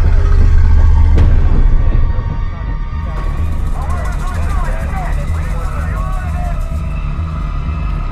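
Film soundtrack of UH-1 Huey helicopters: a deep, heavy rumble over the low thump of the rotors. About three seconds in, the rumble drops and a faster rotor chatter takes over, as heard from the helicopter itself.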